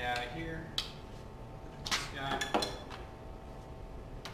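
Clinks and knocks of scanner equipment being handled in an open hard-shell carrying case, with a few sharp clicks, the loudest about two and a half seconds in.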